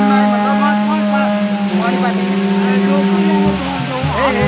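A long, steady droning tone that cuts off about three and a half seconds in, under the voices of a crowd.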